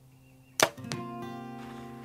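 A single sharp snap of a compound bow being shot, about half a second in. Soft guitar music comes in right after.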